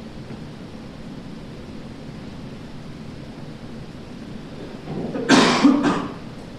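Steady low background hiss, then near the end a person coughing: a loud, short burst of two or three coughs.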